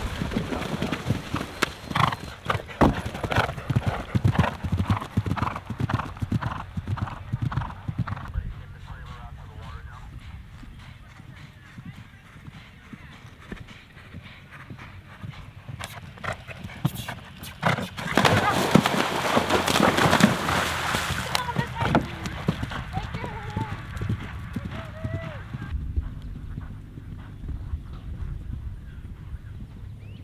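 Horses galloping through a cross-country water complex: hoofbeats and splashing for the first several seconds, then a loud burst of splashing about eighteen seconds in as a horse drops into the water, followed by more galloping hoofbeats.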